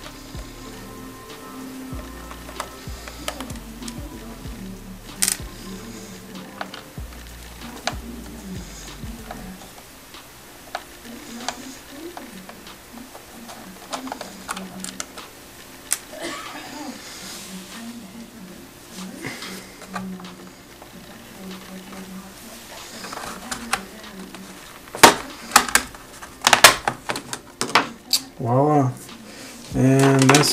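Scattered clicks and scrapes of a slim screwdriver prying at a laptop's plastic bottom panel, ending in a run of loud plastic snaps as the panel comes free near the end. Soft background music plays throughout.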